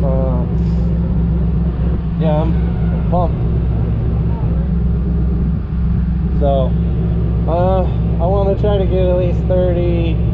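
Drift car's engine idling steadily, heard from inside the cabin, with a few short bits of voice over it.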